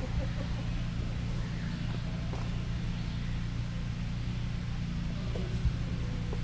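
A steady low hum with faint, indistinct murmuring over it.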